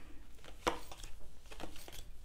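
Tarot cards being laid face up onto a table one after another: a few short taps and slides of card on the tabletop, the sharpest one under a second in.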